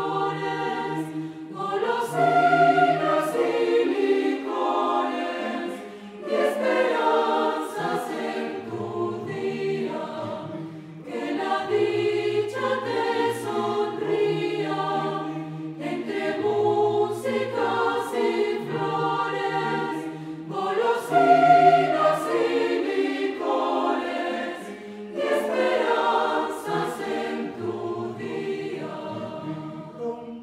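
Mixed choir singing a Venezuelan birthday song in several voice parts, in phrases a few seconds long with brief breaks between them.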